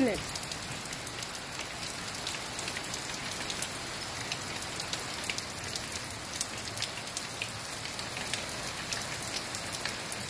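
Hard rain falling steadily: a dense hiss with many sharp drop ticks over it.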